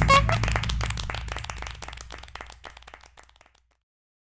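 Clapping, a dense patter of hand claps over a low held musical note, fading out steadily and ending after about three and a half seconds.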